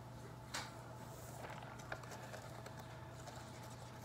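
Quiet room with faint rustling and two light ticks as shake powder is tipped from a paper packet into a plastic shaker cup.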